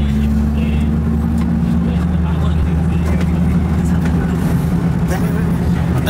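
Bus engine running with a steady low hum, heard from inside the passenger cabin.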